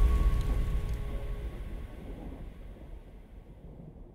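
Tail of an intro logo sound effect: a deep rumble with a few held musical tones, fading steadily away.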